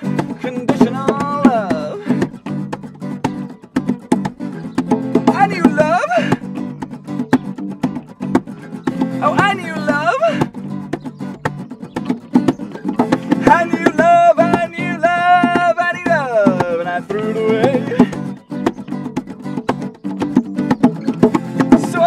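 Live acoustic band music: acoustic guitars played under a singing voice, with one long held sung note a little past the middle.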